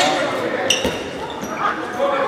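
Handball play on an indoor court: the ball bouncing on the hall floor with a sharp knock about a second in and shoes squeaking, echoing through the large hall.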